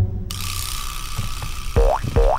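Cartoon sound effects: a steady eerie hiss sets in shortly after the start, with a few faint clicks, then two short rising squeaky creaks near the end.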